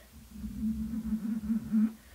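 A man humming one low, held note for about a second and a half, wavering slightly in pitch, starting just after the start and stopping near the end.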